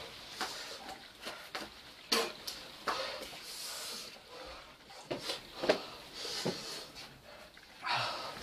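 Faint, uneven breathing and sniffing from a person whose mouth is burning after eating a hot chilli, with a few short sharp clicks and knocks. The loudest click comes about two seconds in.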